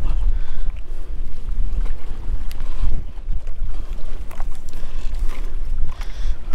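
Wind buffeting an outdoor camera microphone, a loud steady rumble, over choppy water around a wading angler, with a few faint small splashes or knocks.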